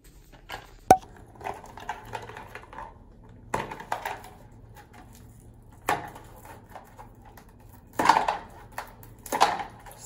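A cardboard pregnancy-test box being handled and opened by hand: a sharp click about a second in, then scattered knocks and crinkling, rustling packaging.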